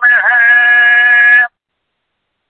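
A man chanting a Sanskrit hymn, holding one syllable on a steady pitch at the end of a line; the voice cuts off suddenly about a second and a half in.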